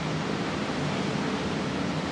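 Steady, even hiss of room noise with no distinct sounds standing out.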